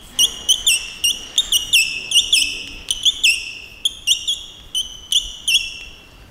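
Chalk squeaking on a blackboard as words are written: a run of short, high-pitched squeaks, several a second, each with a quick bend in pitch.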